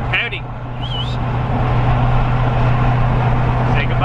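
Duramax V8 turbodiesel pickup cruising at highway speed, heard from inside the cab with the windows down: a steady low engine drone under road and wind noise. A short high squeak cuts in about a second in.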